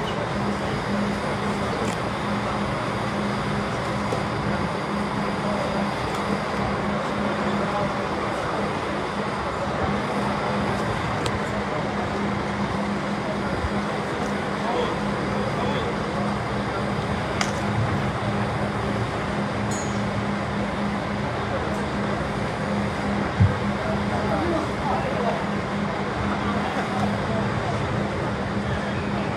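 Hubbub of many people talking at once over the steady low hum of an idling coach engine, with one sharp knock about five seconds before the end.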